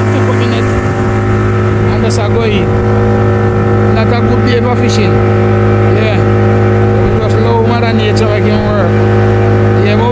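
Outboard motor of a small wooden fishing boat running steadily at cruising speed, a constant low hum with its overtones.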